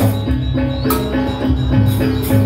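Gamelan music for a Rangda dance: metallophones ringing out a repeating pattern of pitched notes over drums, with a cymbal crash about a second in.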